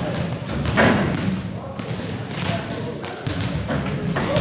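Basketballs thudding and bouncing on a gym floor, several irregular impacts with the loudest about a second in.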